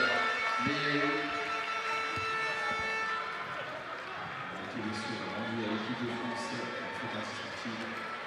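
Arena sound at a wheelchair basketball game: music with held notes over the hall's speakers and indistinct voices, with a few short knocks from play on the court.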